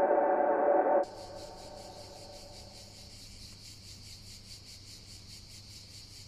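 A loud, sustained, many-toned drone cuts off suddenly about a second in. It leaves a quiet outdoor ambience of insects chirping in a fast, even pulse over a low steady hum.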